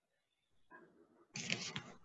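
A pause on a video-call microphone, mostly quiet, broken about a second and a half in by a short burst of noise lasting about half a second, like handling or rustling near the microphone.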